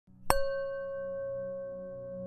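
A singing bowl struck once, just after the start, ringing on with a few steady tones while its brighter overtones fade within about a second, over a low steady hum.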